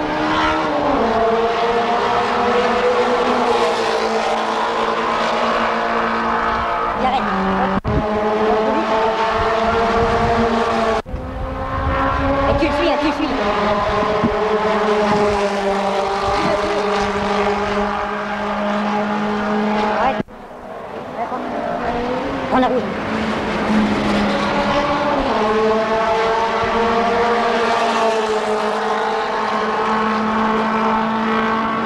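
Racing car engines running at sustained high revs, a steady drone with slow slight rises and falls in pitch. It breaks off sharply for an instant three times, about 8, 11 and 20 seconds in.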